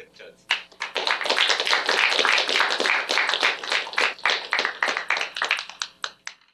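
Audience applauding, starting about half a second in and thinning out near the end.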